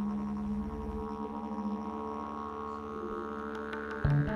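Didgeridoo drone in ambient live band music, a deep steady tone with many overtones. The deepest part of the drone falls away about a second in, while a higher tone slowly rises in pitch.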